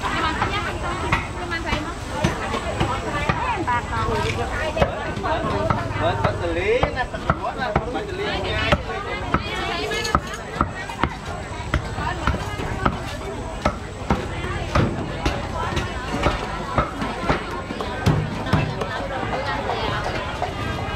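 Busy market chatter of many vendors and shoppers talking, with repeated sharp knocks of a cleaver chopping meat on a wooden block, coming irregularly about once or twice a second in the second half.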